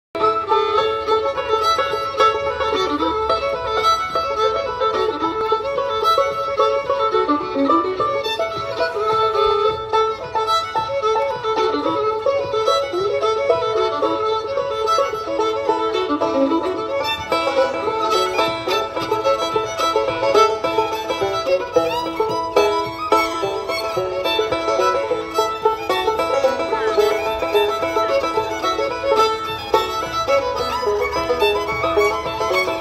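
Live acoustic string music, with a fiddle playing the melody with slides over plucked string accompaniment.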